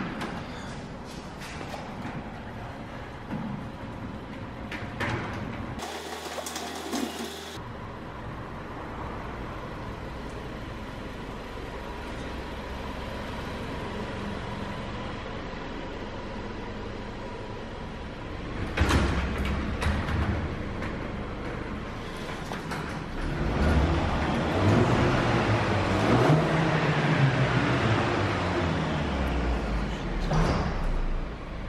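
Motorised sectional garage door running with a steady hum. About 19 seconds in, the engine of a Jaguar saloon starts, then runs, its pitch rising and falling in the car park.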